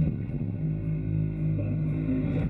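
Live rock band playing a sustained low guitar and bass chord, changing chord right at the start and holding it.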